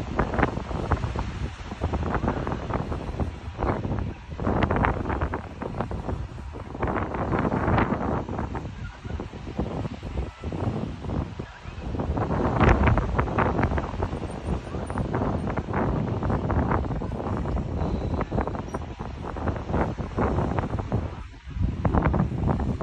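Irregular rumbling and rustling noise on the microphone, swelling and fading every second or two, like gusts or rubbing against the mic.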